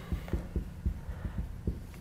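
Dry-erase marker on a whiteboard: faint, soft, irregular low knocks, about eight in two seconds, as the marker taps and strokes across the board.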